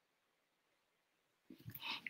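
Near silence: the video call's audio drops out, then a man's voice starts faintly near the end.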